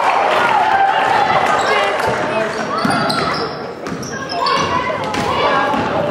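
A basketball is dribbled on a hardwood gym floor during play, over loud, raised voices of people calling out and cheering.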